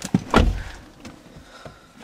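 Car door being shut: a short click, then one heavy thunk about half a second in.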